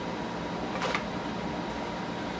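Steady indoor room noise with a faint constant hum, and one brief, soft sound a little under a second in.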